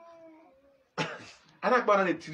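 A man's voice speaking loudly in short bursts from about a second in. It comes after a faint, brief call at the start that glides slightly downward.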